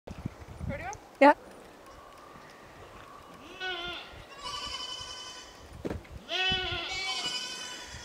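A calf bawling in three long, drawn-out calls from about three and a half seconds in, with a short thump between the second and third.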